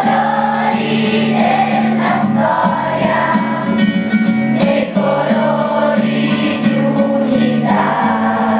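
A large children's choir singing together in a song, with steady held low notes under the voices.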